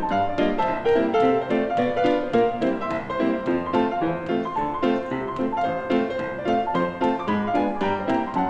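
A Steinway & Sons grand piano played solo in a lively rag, with a steady, even beat of left-hand bass notes and chords under busy right-hand figures.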